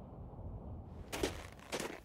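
A low steady rumble, then from about a second in, boots crunching in snow close by, a few irregular steps.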